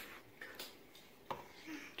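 Quiet room tone with one faint click a little past halfway through.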